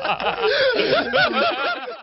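A man laughing heartily in quick repeated bursts, fading out near the end.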